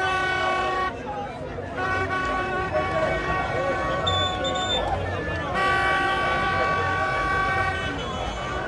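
A vehicle horn sounded in long steady blasts: a short one at the start, then two of about three seconds each, over the voices of a crowd.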